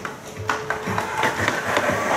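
Soundtrack of a film trailer playing from a computer's speakers: music mixed with a run of sharp knocks or clicks.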